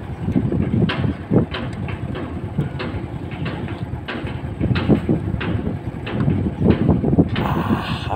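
Wind buffeting a phone's microphone in an uneven low rumble, with irregular soft knocks and rustles from the phone being handled.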